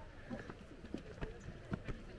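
Footsteps climbing stone steps: irregular taps and scuffs of shoes about three to the second.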